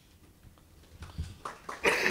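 A pause with only faint room tone. About a second in come a few soft knocks and rustles of a handheld microphone being handled and lowered. A man's voice starts just before the end.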